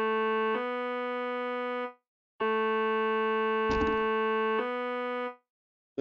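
Plain sawtooth-wave tone from a Polysynth software synthesizer, undistorted, which the player calls "nice and boring." It plays a looped two-note phrase of held notes, the second slightly higher, with a short gap before the phrase repeats. A brief low thump falls in the middle of the second phrase.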